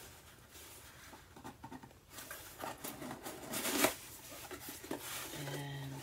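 A small cardboard box being opened by hand: scratchy rustling and scraping of card and paper, loudest just before four seconds in. Near the end comes a short hummed voice sound.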